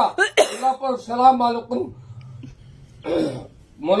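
A man reciting prayers, broken by a throat-clearing cough about three seconds in.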